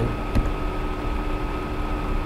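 Steady background hum and hiss with no speech, and a single short click about half a second in.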